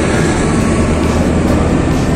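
Steady, loud low rumble of urban outdoor noise.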